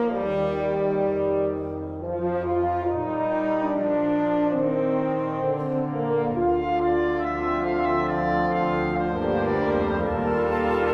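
Concert band playing sustained, brass-led chords that change every second or two over held low notes. The low notes drop out for a few seconds in the middle, then come back.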